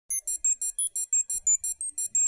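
Electronic intro jingle made of quick, high-pitched beeps, about six a second, with the pitch changing from beep to beep.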